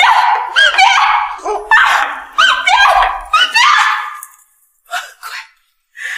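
A woman's short, loud cries of pain and distress, one after another about every half second, then a few brief, quieter sounds near the end.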